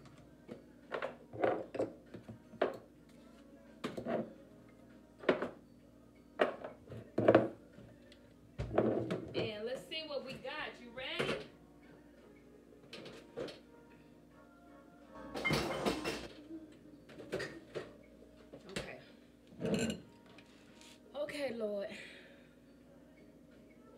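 Kitchen clatter as dishes, containers and utensils are put away: a run of short knocks and clunks at irregular intervals, with cabinet doors closing and a couple of longer rattling clatters later on.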